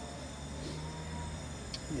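Steady low hum of a propane camp stove burner running under a drum of water held just below the boil.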